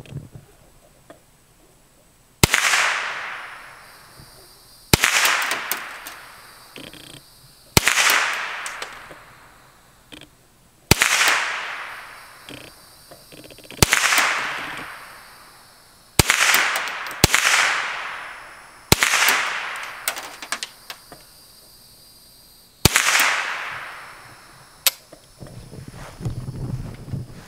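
.22 rifle firing about nine single shots, one every two to three seconds, each crack trailing off in a long fading echo.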